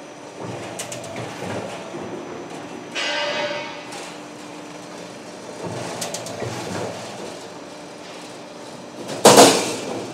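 Steel sheet metal on a cable tray roll forming line clattering over a roller conveyor as it feeds through a press. There is a ringing metallic clang about three seconds in and a sharp, loud metal bang with ringing near the end.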